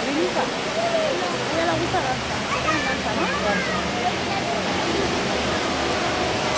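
Steady rush of fountain water jets splashing, with people's voices talking over it.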